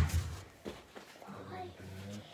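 A knock as the phone is handled right at the start, then faint, low voices and rustling while the phone is carried about.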